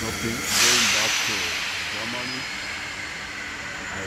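A sudden loud hiss of released compressed air, starting about half a second in and fading over the next two seconds, with a man's voice talking over the start of it.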